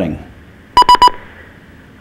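Three quick, short electronic beeps at one high pitch, about a second in.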